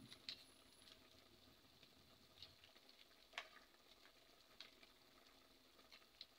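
Near silence with a few faint, scattered clicks: a utensil tapping and scraping a pot as tomato sauce is stirred into the pork.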